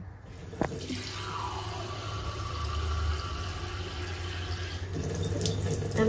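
Kitchen faucet running water into a glass measuring cup to fill it. The flow starts about a second in and shuts off about a second before the end.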